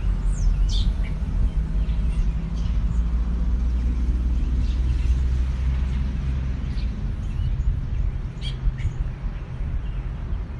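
A low rumble that swells in the middle and then eases off, with a few short bird chirps over it.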